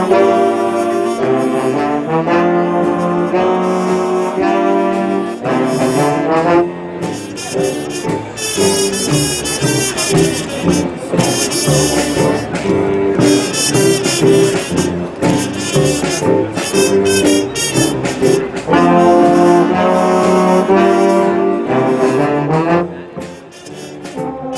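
A jazz big band plays, led by its trumpets, trombones and saxophones. Held brass chords open the passage, a busier, less chordal stretch runs through the middle, and full chords return near the end before a brief drop in loudness.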